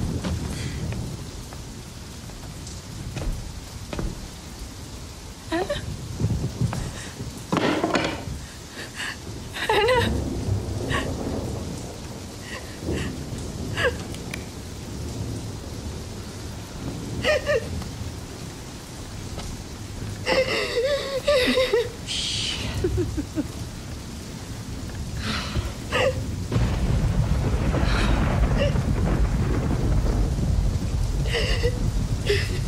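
Steady rain with thunder, a low rumble swelling over the last few seconds. Short vocal sounds break in several times over the rain.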